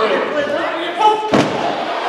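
A single heavy slam just over a second in, a wrestler's body hitting the ring or the hall floor, heard over crowd voices and chatter.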